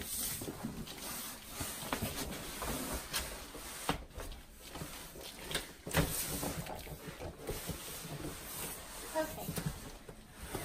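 A cardboard mattress box is pushed and slid up carpeted stairs: cardboard scraping and rubbing, with irregular thumps, the sharpest about four and six seconds in.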